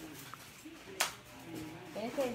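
Quiet room sound with a single sharp click about a second in.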